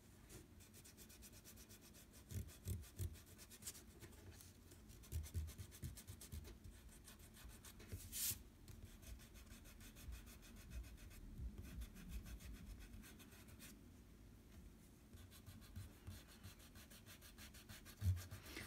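Faint rubbing of an eraser on paper in short, irregular spells, lifting the pencil underdrawing from an ink drawing.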